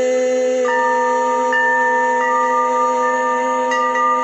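Calm meditation music: a steady held drone with bell-like chime notes struck four times, each ringing on.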